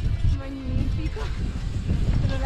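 Wind buffeting the microphone as a low rumble, with people talking in the background.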